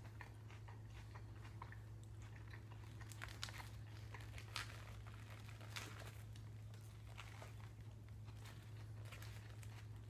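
A person chewing and biting a sandwich close to the microphone: faint crunches and mouth clicks spread through, a few louder ones in the middle, over a steady low hum.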